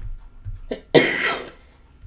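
A woman coughing into her fist: a short cough, then a louder, longer cough about a second in.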